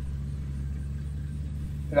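A steady low hum with nothing else over it, a constant bed that also runs under the narration.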